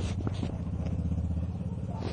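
An engine running with a steady low rumble, a few light clicks over it.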